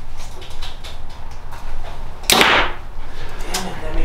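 A Prime Inline 1 compound bow being shot: the string releases with one sharp snap about two seconds in, followed by a short ring that dies away within half a second.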